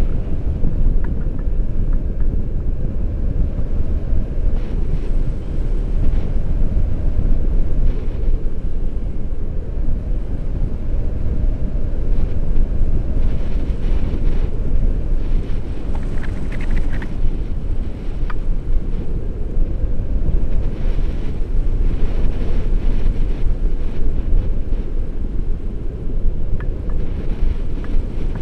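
Wind buffeting the microphone of a selfie-stick action camera on a paraglider in flight: a loud, steady low rumble of airflow.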